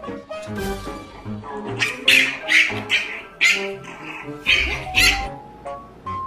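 A cat calling out in a string of about seven short, loud cries over background music, the cries coming thickest in the second half.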